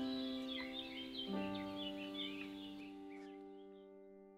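Soft background music of slow, held notes with birds chirping over it, the whole fading out toward the end.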